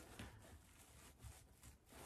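Near silence, with faint rustling of wired ribbon as a bow's loops are pulled and adjusted by hand.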